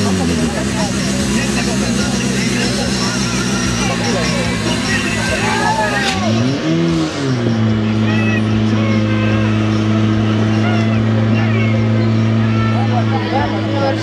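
Portable fire pump engine running steadily under load, pumping water into the attack hoses. About six seconds in, it revs up and falls back, then holds a slightly higher steady speed. People's voices are heard over it.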